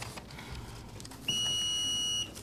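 A single steady, high-pitched electronic beep that starts a little past the middle and lasts about a second, heard over quiet room tone.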